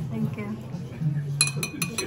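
Metal spoon clinking against a glazed ceramic bowl, a quick run of about four ringing clinks in the second half, over background voices.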